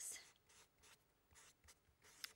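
Marker pen writing on a board: a series of faint, short scratchy strokes as letters are drawn.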